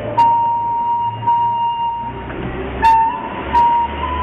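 Recorder playing long held notes: one note held for about two seconds, then after a short break a couple of shorter notes stepping slightly upward. Sharp clicks mark the start of some notes, and a low steady hum runs underneath.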